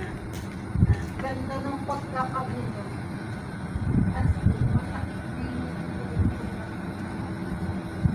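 A steady low rumble with louder surges about a second in and around the middle, and faint voices in the background early on.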